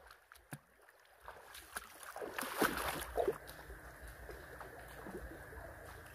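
Shallow creek water running faintly over stones. It starts after about a second of near silence and has a few short, louder sounds about two to three seconds in.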